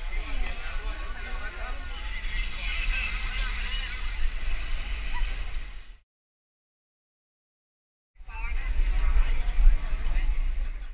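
Wind rumbling on a helmet-mounted action camera's microphone during a group bicycle ride, with voices of the surrounding riders talking. The sound cuts out completely about six seconds in and comes back about two seconds later.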